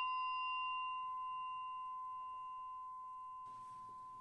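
A single struck bell tone ringing out and slowly fading, a clear main pitch with fainter higher overtones that die away sooner. A fainter, lower tone joins near the end.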